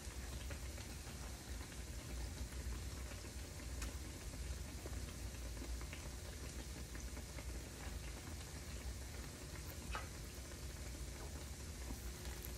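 Akara, bean fritters, sizzling as they deep-fry in a small pan of fresh oil: a steady crackling patter with an occasional faint pop.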